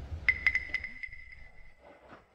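A high, clear ringing tone struck about seven times in quick succession over roughly a second, like a small chime, ringing on faintly and fading toward the end.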